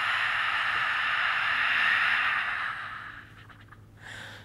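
A woman's long, forceful exhale through a wide-open mouth, the breathy "ha" of lion's breath pranayama, fading out about three seconds in.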